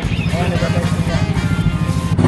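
Yamaha NMAX scooter's single-cylinder engine, built up to 180cc with a racing set-up, idling with a steady, rapid low pulse. Background music and faint speech play over it.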